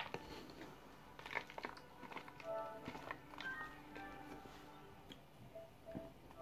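Chunks of cornstarch crunched between the teeth and chewed, with a sharp bite right at the start and a cluster of crunches about a second in. Background music plays underneath.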